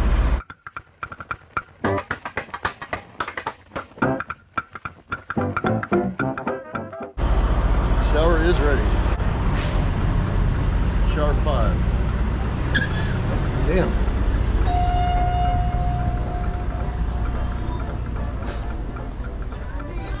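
Background music and indistinct voices. From about a third of the way in they sit over a steady low rumble, and one long steady tone sounds about three quarters of the way through.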